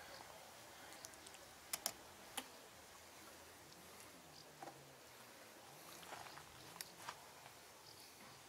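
Near silence, broken by a handful of faint clicks and taps from a mason's trowel scooping mortar out of a bucket and working it over a brick oven vault.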